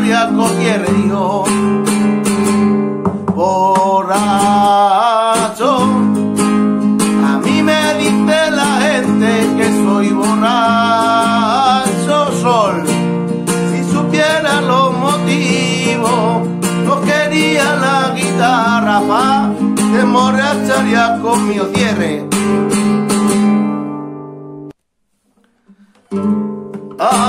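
Capoed nylon-string Spanish guitar strummed in a rumba rhythm while a man sings along. The playing fades out about a second and a half before the end, leaving brief near silence.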